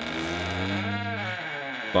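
A man's voice holding one long, drawn-out vocal sound for nearly two seconds, low-pitched and steady in loudness.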